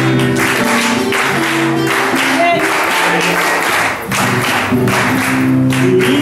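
Live Cuyo folk music: a strummed acoustic guitar accompanying a woman singing, with dancers' handclaps cracking along in rhythm.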